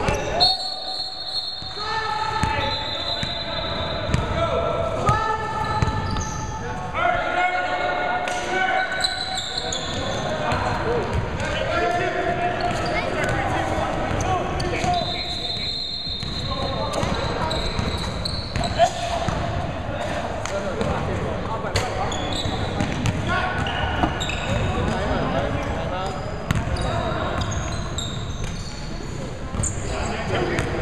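A basketball bouncing on a hardwood gym floor during play, with players' voices throughout, all carrying the echo of a large hall.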